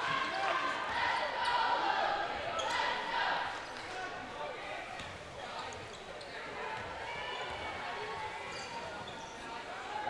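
A basketball being dribbled on a hardwood gym floor under a steady murmur of crowd and players' voices, all echoing in the gym.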